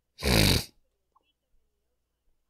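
A person's short, loud snort, about half a second long, with a rattly low buzz under a breathy hiss.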